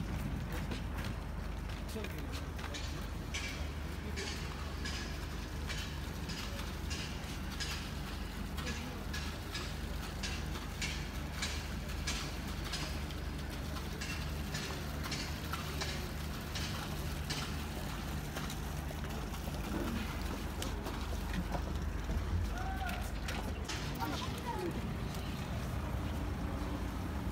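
Water taxi's engine idling at the dock with a steady low hum, with a run of footsteps clicking over it for much of the time.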